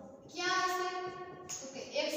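A woman's voice drawing out a syllable at an even pitch for about a second, in a sing-song way, with another syllable starting near the end.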